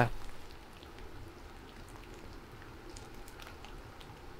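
Faint patter of light rain falling on the forest, an even hiss with scattered soft ticks.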